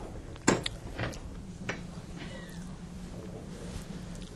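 Steady low room hum broken by a few sharp knocks and clicks in the first two seconds, the loudest about half a second in, then a faint short squeak.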